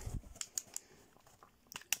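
Light plastic clicks and taps from a G1 Sandstorm Transformers toy being handled and its parts pushed into place: a few faint clicks in the first second, then two sharper clicks near the end.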